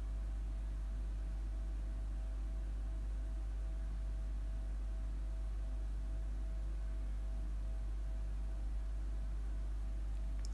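Steady low background hum with a faint hiss, unchanging throughout, with no distinct event.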